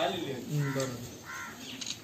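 Several people talking in the background, with two short bird calls, the first under a second in and the second about halfway through.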